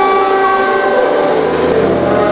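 Free improvised music by a large ensemble: a dense cluster of sustained notes held together, like a horn chord, with a low held note entering about a second and a half in.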